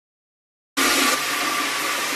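Silence, then a steady rushing spray that starts suddenly less than a second in: a shower running.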